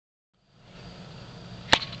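Faint steady outdoor background with a low hum, broken by a single sharp click about three-quarters of the way through.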